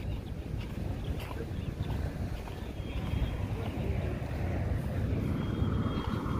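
Steady low outdoor rumble of road traffic and wind on the microphone, with a few faint clicks.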